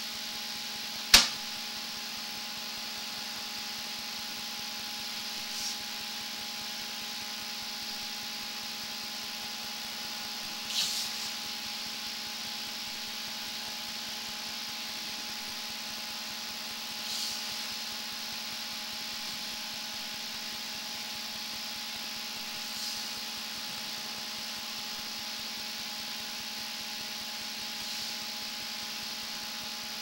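A steady machine hum with a constant hiss, broken by one sharp click about a second in and a few faint, brief swishes spaced several seconds apart.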